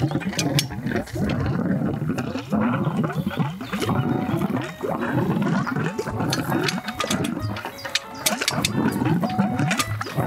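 An airlift drill stem gurgling and surging as compressed air drives drilling fluid up the pipe, with fluid spurting and splashing irregularly from the outlet at the top. The stem has been lowered, so the air-lifted fluid now reaches the top and comes out.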